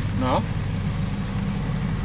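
Rain falling on a fabric awning roof, a steady even hiss, over a continuous low hum.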